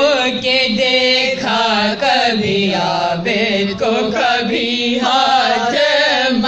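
Women's voices reciting a noha, an Urdu Shia lament, in a slow continuous sung chant with long held, wavering notes.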